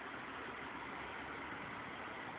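Faint, steady background rumble of distant engines, with no distinct events.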